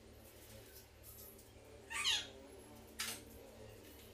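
A single short squawk-like call falling in pitch about two seconds in, then one sharp click about a second later, over a faint low hum.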